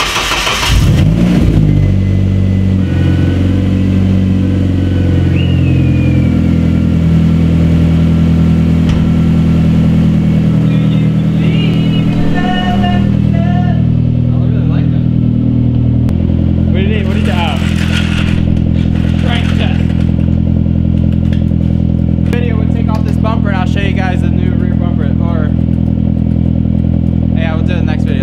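Nissan 240SX S14's engine idling steadily just after being started, with voices talking over it in places.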